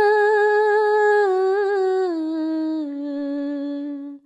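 A solo voice singing a Hindi devotional song (bhajan), holding one long note that steps down in pitch twice and fades at the end.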